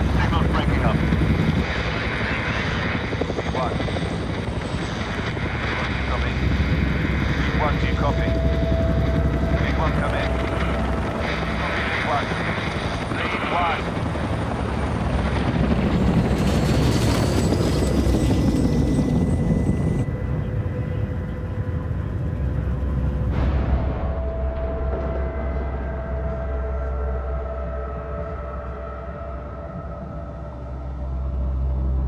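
Helicopter rotor and engine noise mixed with crackling radio chatter. About halfway through, a falling whine with a burst of high hiss as a helicopter goes down, then a lower steady rumble with thin sustained tones near the end.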